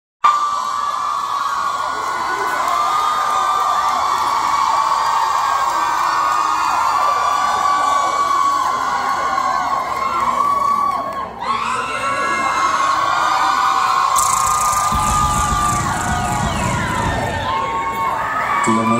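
Concert crowd of fans screaming and cheering without a break, many high-pitched voices at once, dipping briefly about eleven seconds in. A low rumble joins in the last few seconds.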